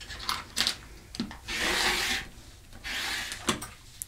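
Rotary cutter rolling along the edge of a quilting ruler, slicing through cotton fabric on a cutting mat: two cutting strokes of under a second each, with a few light clicks as the ruler and cutter are handled.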